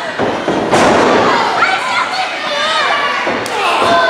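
A wrestler's body slamming onto the ring mat with one sharp thud a little under a second in, over a crowd shouting and yelling.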